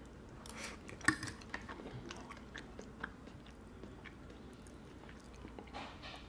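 A person chewing a mouthful of beans with hot sauce: faint, scattered small wet mouth clicks, the sharpest about a second in.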